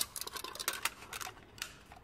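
Hands handling a folded cardboard VR viewer as a rubber band is stretched over it: one sharp snap at the start, then a run of light clicks and taps that die away near the end.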